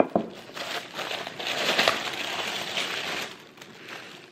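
White paper gift wrapping crinkling and rustling as a package is handled and opened, after a sharp click at the very start; the rustling fades near the end.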